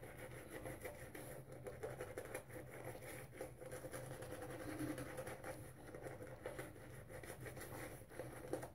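Boar-bristle shaving brush worked over a lathered face: a faint, continuous scratchy swishing of bristles through the lather.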